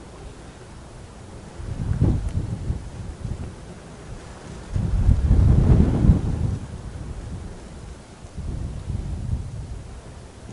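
Wind buffeting the microphone in three low rumbling gusts: one about two seconds in, the loudest from about five to six and a half seconds, and a third near the end, over a steady low rumble.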